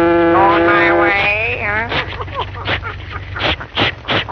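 A cartoon voice holds one long, steady sung note, then slides up and down in a wavering cry. A string of sharp knocks and clicks follows.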